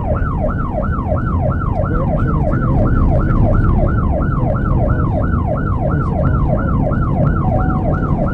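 Police siren of a Texas DPS patrol car in fast yelp mode, rising and falling about three times a second, heard from inside the pursuing cruiser over heavy road and engine rumble. A brief steady tone joins the siren near the end.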